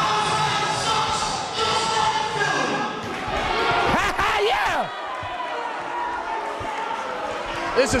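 A man's voice through the arena's public-address speakers, echoing in the large hall. A louder call with rising and falling pitch comes about four seconds in.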